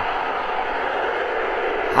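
Steady background hiss with no other event: an even noise that holds at one level throughout.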